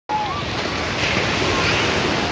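Small waves breaking and washing up a sandy beach in a steady rush, with wind on the microphone and faint voices of people on the beach.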